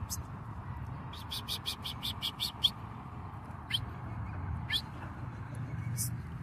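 Small birds chirping: a rapid run of short, high chirps, about eight a second, then two single calls that slide downward in pitch, over a low background rumble.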